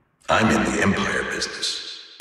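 A processed voice sample in a minimal techno track, coming in after a brief dead-silent dropout and fading away with no beat under it.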